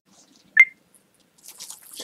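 A single short wet click about half a second in, as a tongue or lips part, then a soft hiss of breath drawn in near the end.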